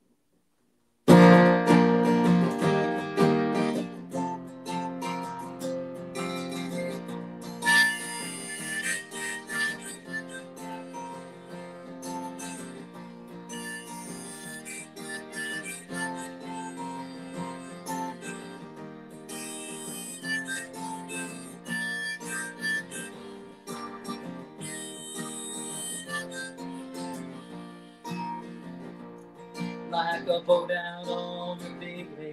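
Harmonica in a neck rack and acoustic guitar playing together, starting about a second in, loudest at the outset. This is the instrumental introduction to a folk song, before any singing.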